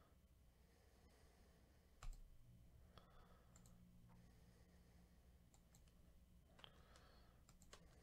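Near silence: faint room tone with a low knock about two seconds in, then a handful of faint scattered clicks.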